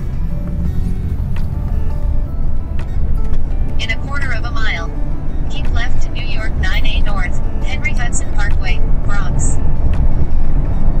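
Steady low road and engine rumble inside a moving car's cabin. A high voice comes in over it from about four seconds in until near the end.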